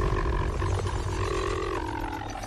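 Film-trailer sound design: a deep hit, then a sustained noisy drone with a held tone running through it.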